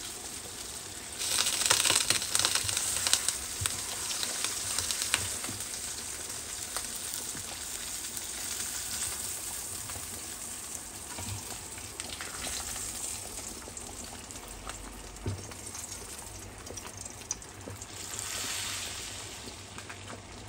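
Fish frying in hot oil in a pan, sizzling steadily, beside a pot of dal at a boil. The sizzle swells about a second in and again near the end, with small clicks throughout.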